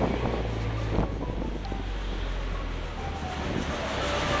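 Wind rumbling on the microphone over background street traffic, with a single click about a second in.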